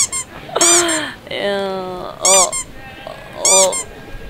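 A bird calling several times in short, high-pitched calls at irregular gaps of a second or more.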